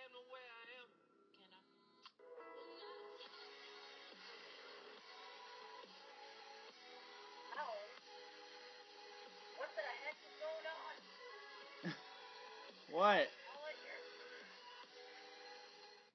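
Played-back video audio: music and voices over a steady, static-like hiss that sets in about two seconds in.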